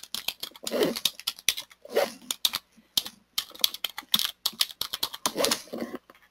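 Typing on a computer keyboard: a quick run of keystrokes with a few short pauses between words.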